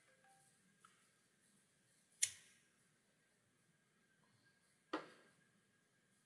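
Near silence broken by two sharp clicks, the louder one about two seconds in and a second one nearly three seconds later.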